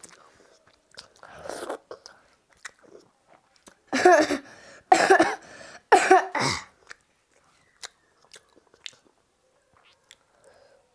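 A boy coughing three times, about a second apart, the loudest sounds here, with softer wet chewing and mouth sounds from eating water rice by hand around them.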